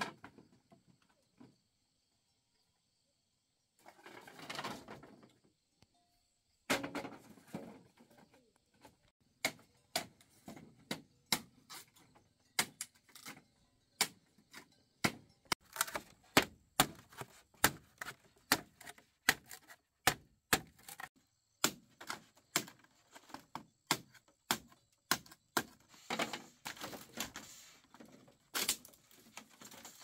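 Machete hacking at a green bamboo pole resting on a wooden block: a steady run of sharp knocks, about one and a half a second, starting about nine seconds in, after a couple of brief rustling scrapes.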